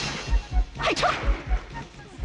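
Film soundtrack with a low drum beating in pairs, about two beats a second. A sharp crack comes about a second in, with short falling calls around it.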